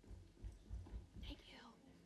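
Faint low thuds of footsteps crossing a stage, with a faint whispered voice about a second in, barely above room tone.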